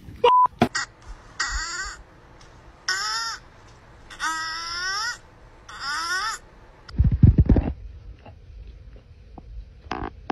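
Four harsh, drawn-out animal calls, caw-like, a little over a second apart, followed by a short burst of low thumps about seven seconds in.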